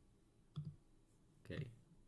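Quiet room tone with soft computer mouse clicks and two short, faint vocal sounds from the presenter, one about half a second in and one about a second and a half in.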